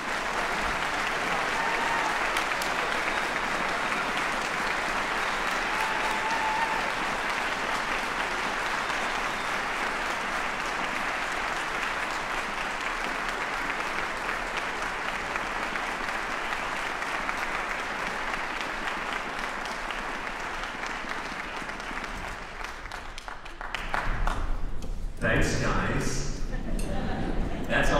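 Audience applauding steadily, dying down after about twenty-two seconds.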